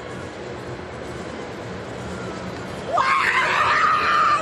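Female hammer thrower's loud yell as she releases the hammer, starting about three seconds in with a sharp rise in pitch and then held, over a steady stadium crowd murmur.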